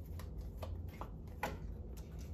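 Tarot cards being handled: a few soft flicks and taps as a card is drawn from the deck and laid on the table.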